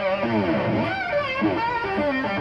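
Electric guitar played loud and distorted: a held note breaks into repeated swooping pitch bends that dive and rise again.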